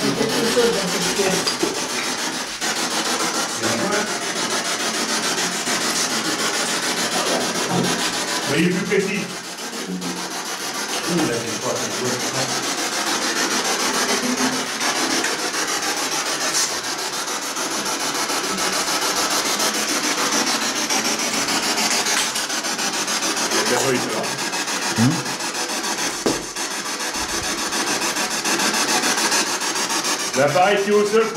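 Continuous loud hissing static, steady throughout, with a few brief faint voice-like fragments in it.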